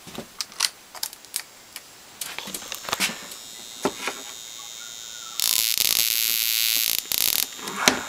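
A flyback transformer run from a 555-based ignition coil driver, giving a loud high-pitched buzz for about two seconds past the middle. It is preceded by a few scattered clicks and a faint steady whine.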